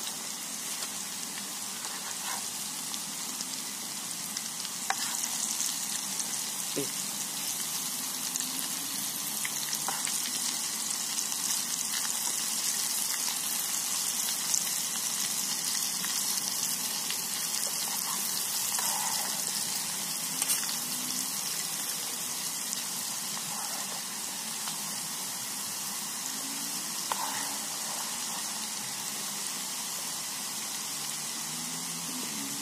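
Slices of banana tree stem deep-frying in hot oil in a small camping pot, with a steady sizzle throughout. A metal spoon stirring the slices clicks a few times against the pot.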